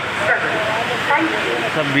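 Heavy rain falling as a steady, dense hiss, with people's voices talking over it.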